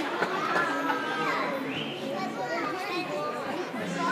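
Several young children's voices talking and calling out at once, high-pitched and overlapping.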